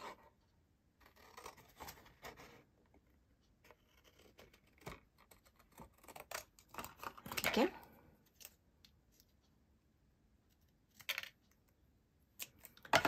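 Sheet of card being handled and rustled, then scissors snipping through it in a few short cuts near the end, cutting out a stamped word strip.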